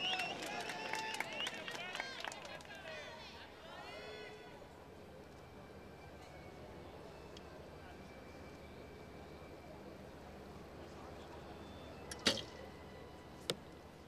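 A recurve bow shot against a low background: one sharp snap of the string as the arrow is released near the end. About a second later comes a fainter click as the arrow strikes the target.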